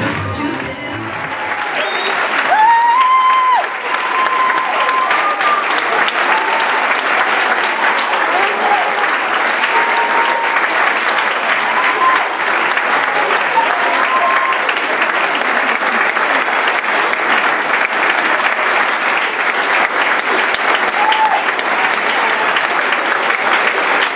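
Audience applauding and cheering, loud and continuous, with high whoops and shouts rising out of it. The dance music under it stops about a second and a half in.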